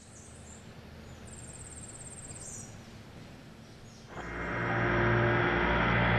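Faint outdoor ambience with a short, high, rapidly pulsing chirp. About four seconds in, a louder steady background noise with a low hum swells up and holds.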